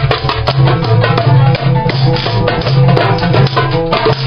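Live music: a hand drum struck with the hands in a quick, busy rhythm over steady low bass notes.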